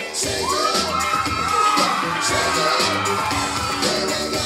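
Upbeat dance music playing, with the audience cheering over it and a long high-pitched shout that rises and is held for about three seconds.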